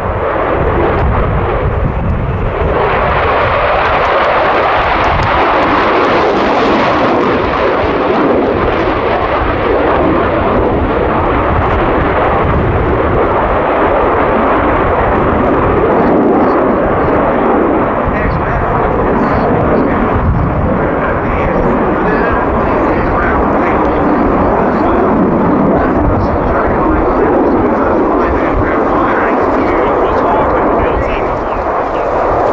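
Jet noise from an F/A-18C Hornet's twin General Electric F404 afterburning turbofans as the fighter manoeuvres overhead: a loud, continuous rush that swells and brightens about two to three seconds in and stays strong throughout.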